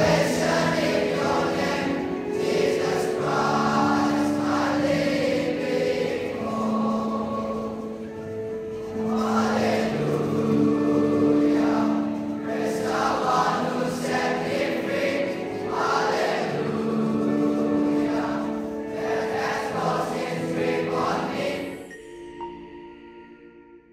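Boys' choir singing in parts, several long held notes sounding together phrase after phrase; the singing fades out near the end.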